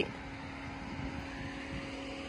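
Steady low mechanical hum with a few faint even tones, under outdoor background noise.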